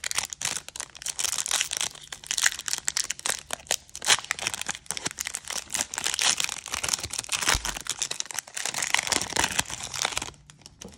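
Foil wrapper of a Mosaic football trading-card pack being torn open by hand: continuous crinkling and tearing crackle, with a dull bump about seven and a half seconds in.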